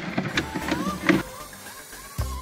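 Clicks and knocks of a slide-out cooker shelf being pulled out on metal runners and its fold-down leg being set up, most of them in the first second or so.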